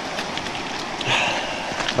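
Steady rush of a creek flowing past a gravel bar, with a few scattered crunches of steps on the loose flint stones.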